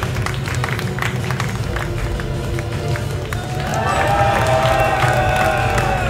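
Live progressive metal band playing on stage: a steady low rumble with scattered sharp hits, and from about halfway a held melodic line with a slightly sliding pitch rising over it, with crowd noise underneath.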